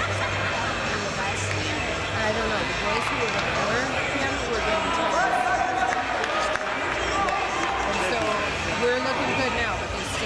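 Indistinct chatter of several people talking at once, echoing in a large hall, with a few faint taps.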